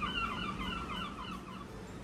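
A bird calling with a wavering, warbling whistle that fades out about one and a half seconds in.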